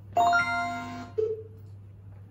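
Short musical jingle from the Magic Phonics 3 program as its title screen opens: a bright chord of several held notes for about a second, then one lower note.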